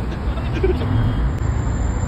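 Road traffic on a busy multi-lane city street: cars and a box truck driving past with a steady low rumble.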